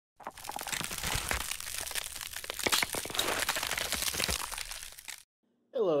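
Dense crackling and crunching made up of many small cracks, running for about five seconds and then cutting off suddenly.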